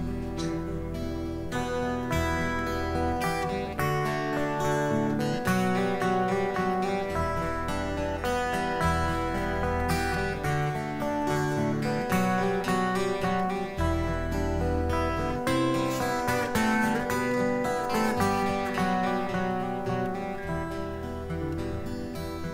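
Two acoustic guitars playing an instrumental folk passage without vocals, fingerpicked and strummed over a moving bass line.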